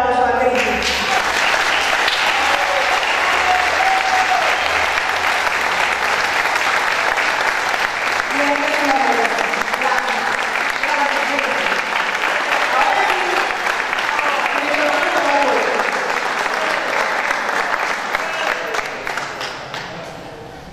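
Audience applauding steadily, with voices among the crowd; the clapping fades out near the end.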